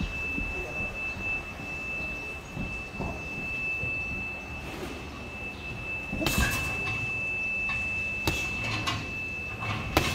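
Boxing gloves striking a heavy bag: a few scattered blows, with a quick pair of harder punches just past the middle and more toward the end. A steady high-pitched tone sounds throughout.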